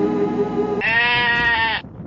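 Sustained end-credits music cuts off a little under a second in and gives way to a single drawn-out sheep-like bleat, about a second long, that stops abruptly.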